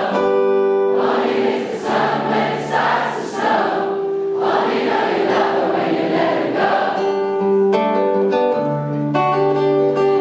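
A concert crowd singing a chorus together, many voices blended, over a strummed acoustic guitar.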